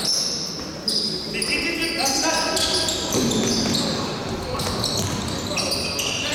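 Basketball game sounds in a large gym hall: sneakers squeaking on the court floor again and again, the ball bouncing, and players calling out, all echoing. A sharp knock comes about a second in.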